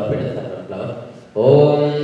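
A voice chanting a Sanskrit mantra, holding one long, steady note that comes in loudly about a second and a half in, after a softer stretch of voices.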